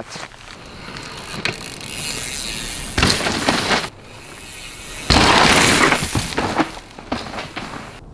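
Mountain bike rolling off a rock slab and landing a steep drop of about 12 feet: tyres rolling over rock with a ratcheting, clicking mechanism, then a loud sudden burst about five seconds in as the bike lands and rolls out on dirt.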